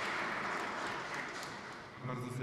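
Audience applause dying away, an even patter that grows steadily quieter.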